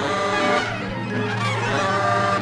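Free-improvised avant-garde jazz from a live octet of reeds, brass, cello, vibraphone and drums. Several held wind-instrument notes overlap, and a low sustained tone comes in about half a second in.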